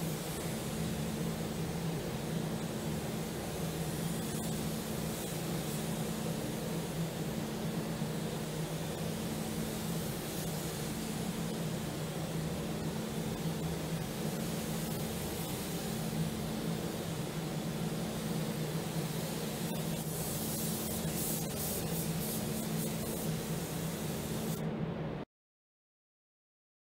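Steady hiss of a gravity-feed paint spray gun, over a steady low hum from the paint booth's air handling. About 20 seconds in the hiss turns to short, rapid pulses, and the sound stops abruptly near the end.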